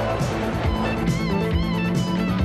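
Action-scene background music led by electric guitar over a steady beat.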